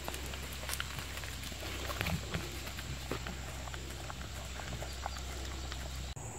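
Gray wolves licking and lapping vanilla ice cream from paper cups on the ground, a run of irregular short clicks and smacks.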